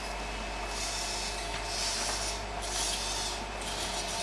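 Servo motors of a small humanoid robot whirring in repeated short spells, about one a second, as it shifts its legs and body to climb steps.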